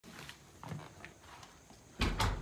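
Faint, scattered scuffs and taps of a toddler's sneakers pushing a balance bike along a concrete path.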